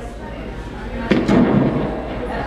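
A loud thump about a second in as a guitar is handled and knocked, followed by a rumbling, noisy sustain.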